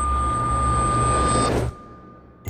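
Trailer sound-design drone: a low rumble under a steady high-pitched ringing tone and a swelling hiss, which cuts off suddenly near the end.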